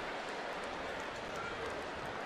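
Ballpark crowd noise: a steady, even hubbub of many distant voices, with nothing standing out.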